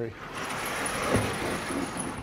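A vertically sliding lecture-hall chalkboard panel being moved on its tracks: a steady rolling rush of noise lasting nearly two seconds, with a faint high whine over it.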